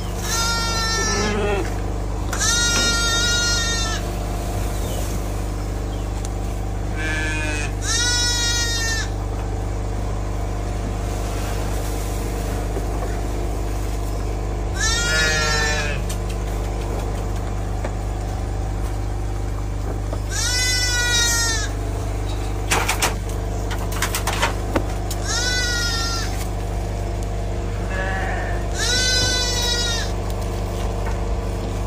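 Sheep bleating again and again, about eight separate calls of about a second each, each dropping in pitch at the end, over a steady low hum. A few sharp knocks come about two-thirds of the way through.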